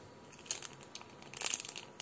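Clear plastic zip-lock bag of fine granules crinkling as it is handled and tilted, in short faint crackles about half a second in and a denser spell around the middle.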